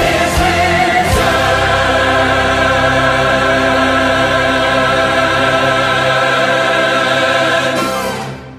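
Choir and orchestra ending a gospel-style praise anthem: a few accented hits in the first second, then a final chord held and released right at the end, ringing away.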